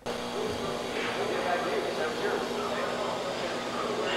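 Indistinct voices over steady room noise, with a constant low electrical hum.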